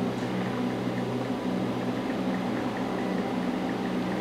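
Steady low mechanical hum with a faint hiss, unchanging throughout.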